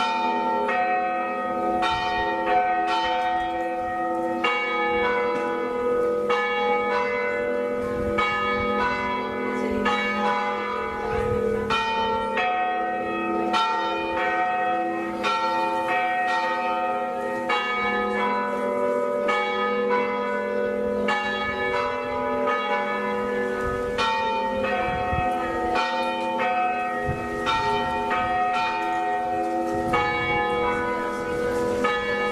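The bells of Tarragona Cathedral ringing in a continuous peal. Several bells are struck one after another, a strike every second or less, each ringing on under the next.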